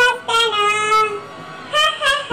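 A high, child-like voice singing, holding long steady notes, with a brief break about three-quarters of the way through.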